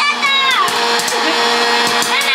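Electric hot-air popcorn maker running: its fan blows steadily with a hum, and scattered pops and clicks come as popped kernels are blown out of the chute.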